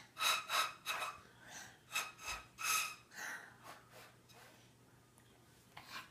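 A young child blowing short breathy puffs into a small tube-like object held to her lips like a pretend flute, each puff carrying a faint airy whistle tone. About three puffs a second for the first three seconds, then they trail away.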